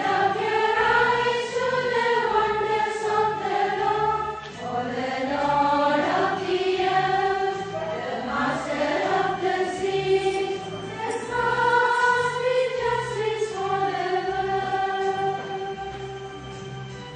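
A choir singing a slow hymn in unison over a low instrumental accompaniment, the sound tapering off near the end.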